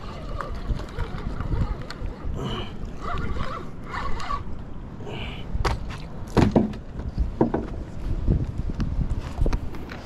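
Wind buffeting the microphone with a low rumble. In the second half come several sharp knocks and thumps as a hooked stingray is hauled over the wooden pier railing and lands on the deck planks.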